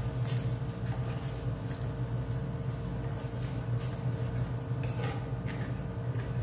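A spoon scraping and tapping against a frying pan while stirring chicken pieces in a thick mushroom gravy: a series of short, irregular scrapes. A steady low hum runs underneath.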